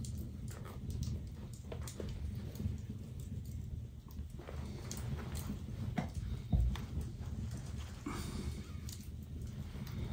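Hand saddle-stitching leather with two needles: scattered soft clicks and rustles as the needles and thread are pushed and drawn through the leather, over a steady low hum, with a single thump a little past six seconds in.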